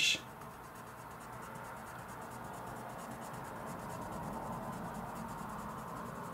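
Crayola coloured pencil scribbling back and forth on white cardstock, a steady scratching as a colour swatch is filled in.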